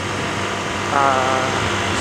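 Motorcycle ridden at highway speed: steady engine hum under a rushing haze of wind noise. About halfway through, a drawn-out voice sound is held for just under a second.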